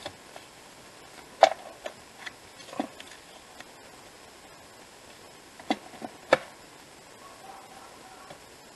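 Sharp plastic clicks and taps from a sliding-blade paper trimmer as black cardstock is lined up and cut. There is one loud click about a second and a half in, another near three seconds, and a pair about six seconds in, with lighter ticks between.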